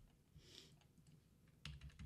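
Faint computer-keyboard typing: a soft keystroke sound about half a second in, then a quick run of sharp key clicks near the end.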